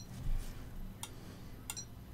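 A Peak Atlas ESR70 capacitor/ESR meter gives two brief high-pitched chirps, one at the start and one near the end, as it tests an in-circuit capacitor and reports open circuit or low capacitance. There is a soft click in between and a low handling bump just after the first chirp.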